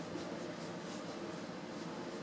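Faint scratchy rubbing of a screwdriver turning the small T9 Torx screw that holds the iMac's SD card reader, over a steady low hum.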